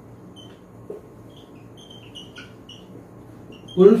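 Felt-tip marker writing on a whiteboard, making a series of short, high-pitched squeaks over a faint room hum. A man's voice starts speaking just before the end.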